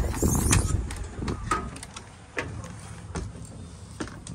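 Wind buffeting the microphone, with clicks and clunks of a motorhome's entry door being opened and stepped through. The wind rumble dies away about two seconds in, leaving a few knocks in the quieter cabin.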